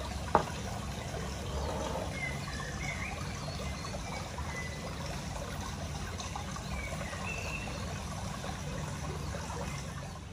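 Steady trickling water. About a third of a second in, a single sharp knock as the small brass censer is set down on the wooden table.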